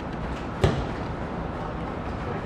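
A football kicked once, a sharp thud about two-thirds of a second in, over a steady outdoor background hum.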